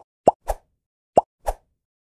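Five short pop sound effects, three in quick succession and two more about a second later, marking elements popping onto an animated end card.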